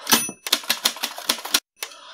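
Typing sound effect: a brief high ring at the start, then a quick run of key clacks, about eight a second, with a short break near the end before two more strokes.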